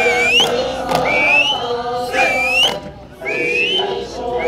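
Eisa drum-dance music: an Okinawan folk song with group singing, cut by sharp strikes of the dancers' hand drums. Short high rising whistles repeat about every second and a half over the music.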